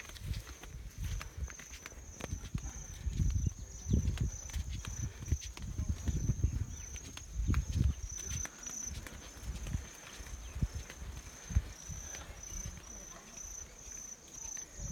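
Footsteps in flip-flops on a stone and dirt path, with irregular low thumps, under a steady high-pitched trill of insects.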